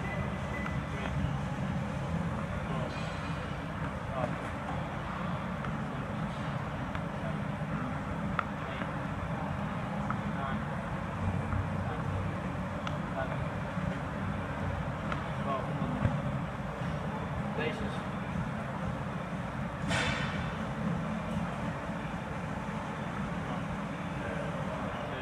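Steady low rumble of gym room noise with a murmur of voices, and a few soft knocks. One sharper knock comes about sixteen seconds in, and a brief hiss about twenty seconds in.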